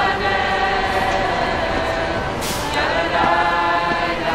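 A crowd of people singing together unaccompanied, holding long notes, with a brief hiss about two and a half seconds in.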